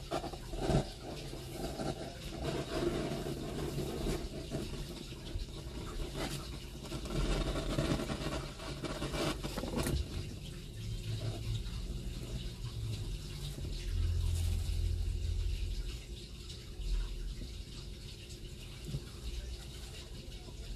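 Fire burning in a bowl with an irregular rushing noise, mixed with rustling and small clicks of handling around a foil tray.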